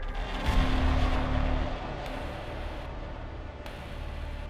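Small hatchback rolling along a crash-test track toward the barrier, a low rumble that swells about half a second in, is loudest for about a second, then settles to a steadier, lower noise.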